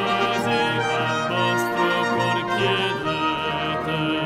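A full military wind band playing a brass-heavy anthem, with a tenor singing held, vibrato notes over it.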